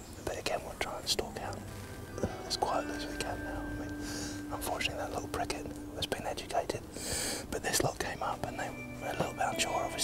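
Hushed, whispered speech between men, broken up, with small clicks and a few faint steady tones underneath.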